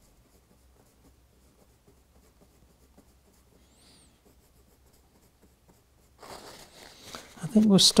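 Faint, light scratching of a small paintbrush dry-brushing acrylic paint over model railway track sleepers. A louder noise starts about six seconds in, and a man's voice comes in near the end.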